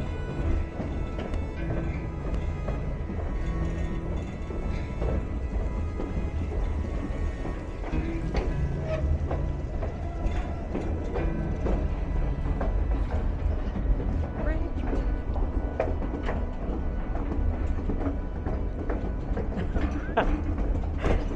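White Pass & Yukon Route passenger train rolling along the track, heard from the car: a steady low rumble with frequent clicks and knocks from the wheels and running gear.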